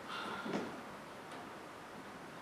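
A couple of soft taps, the first about half a second in and a fainter one later, over quiet room tone.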